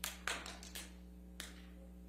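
A few short, sharp knocks and taps, about five within the first second and a half, over a steady low electrical hum.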